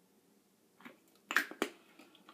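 Bath & Body Works fragrance-mist spray bottle being handled: a faint click, then two short sharp clicks in quick succession about a second and a half in, from its cap and pump spray.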